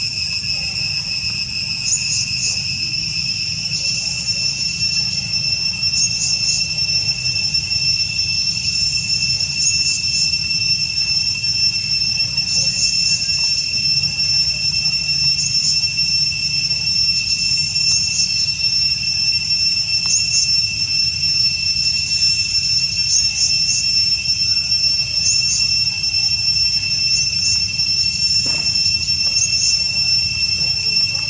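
Insect chorus in the forest: a steady, high-pitched drone with short chirps repeating every second or two, over a low background rumble.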